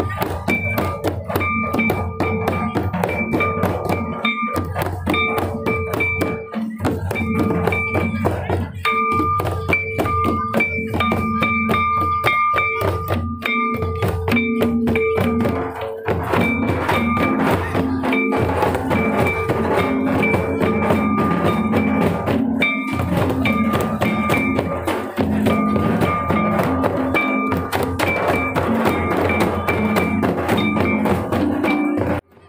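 Folk dance music played on barrel hand drums (madal), with a dense run of rapid drum strokes under a steady, repeating melody line. About halfway through, a lower line that bends from note to note joins in.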